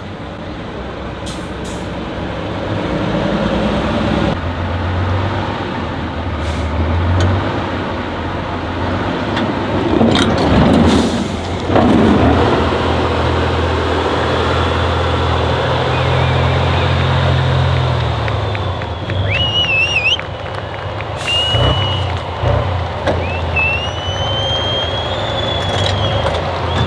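Tatra 8x8 trial trucks' diesel engines working under load on a steep, rutted off-road climb, the engine note rising and falling. Two loud rushing bursts come about ten and twelve seconds in, and a high whistle rises in pitch over the last several seconds.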